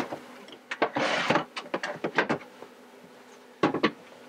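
Handling noise as a plastic storage bin is slid and lifted off a wooden step: a scrape about a second in, then a series of short knocks and clicks, with a last cluster near the end. A faint steady hum runs underneath.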